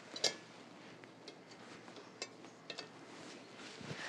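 Quiet room tone with a few faint, sharp clicks and light taps, the small handling sounds of a covered roasting pot and oven mitts on a counter.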